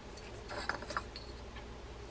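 Faint handling sounds of a fishing-reel drag washer and spool in gloved fingers: a few light ticks about half a second to a second in, as the washer is fitted back into the spool.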